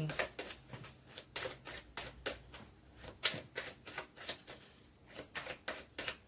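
Oracle cards being shuffled by hand: an irregular run of soft card flicks and clicks, a few a second, thinning out for a moment about four seconds in.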